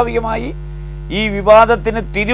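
A man speaking Malayalam over a steady low electrical mains hum, with a short pause in his speech about half a second in where only the hum is left.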